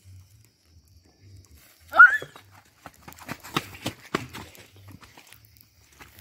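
Small firecrackers popping irregularly in a street bonfire, with a short rising yelp about two seconds in.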